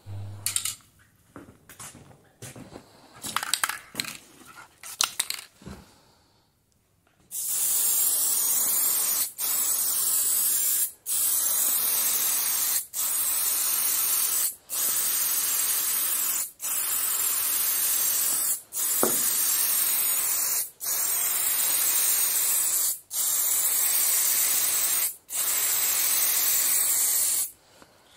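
Aerosol spray can spraying automotive paint onto a car roof: about ten steady hissing sprays of roughly two seconds each, with brief breaks between them, starting about seven seconds in. Before that, only faint handling clicks.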